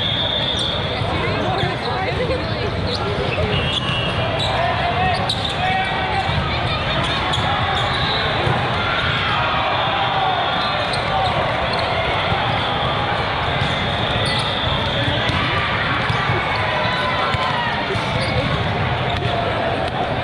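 Busy din of a large hall with several volleyball games going at once: many people talking and calling out, balls being struck and bouncing on the court, and a few short shrill whistle blasts.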